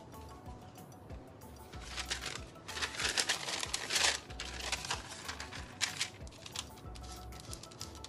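A paper towel crinkling as it is handled and laid over a painted leaf, in rustling bursts loudest from about two to four seconds in, over soft background music.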